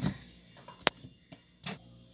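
A single sharp tap of a metal whisk against a glass mixing bowl, about a second in, in otherwise quiet room tone.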